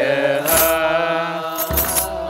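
Ethiopian Orthodox clergy chanting in unison on long, drawn-out notes. The chant is punctuated twice by sharp percussion strikes, the second with a low drum beat.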